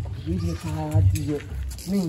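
A man's voice making a drawn-out wordless cry with a wavering pitch, about a second long, then a shorter cry near the end.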